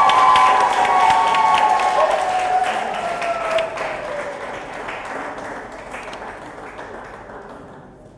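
A room audience applauding and cheering for an announced winner, with long high-pitched cries held over the first few seconds. The clapping and cheering die away steadily toward the end.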